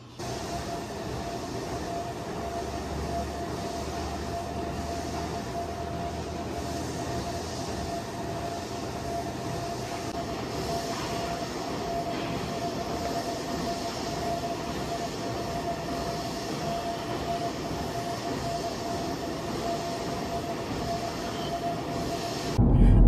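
Steady mechanical running noise of gym machines, a continuous rumble with a faint steady whine, with no music or speech over it.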